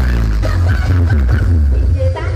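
Electronic dance music played very loud through a large 'sound horeg' sound system of stacked subwoofers (96 subs), the deep bass running unbroken under sliding synth lines.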